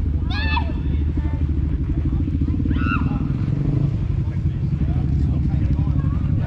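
An engine idling with a steady, pulsing low rumble. Two brief snatches of voices rise above it, about half a second and three seconds in.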